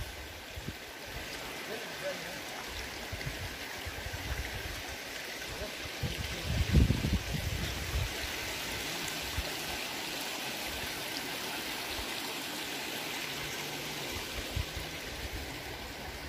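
Shallow stream of hot-spring water running steadily over mud and stones in snow. A low rumble swells briefly about six to seven seconds in.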